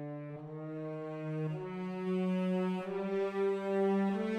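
Sampled orchestral solo French horn and three muted cellos playing held, slow chorale-style chords without vibrato. The notes change about three times and the sound swells gradually louder.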